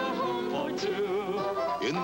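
A man and a woman singing a sentimental old-fashioned duet with wide vibrato over a band accompaniment, from an old film-musical soundtrack.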